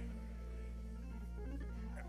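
Church organ holding a steady sustained chord over a low bass note.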